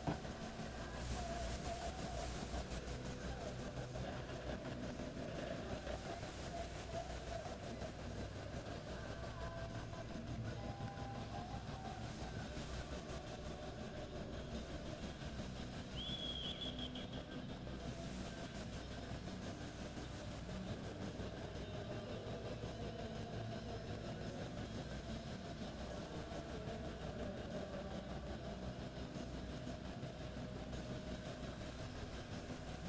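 Faint, steady low rumble of indoor-arena background noise, with a brief high tone about sixteen seconds in.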